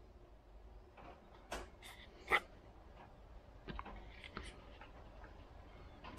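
Faint, scattered clicks and light knocks of a brake pad being handled and fitted at a disc-brake caliper, the loudest a little past two seconds in.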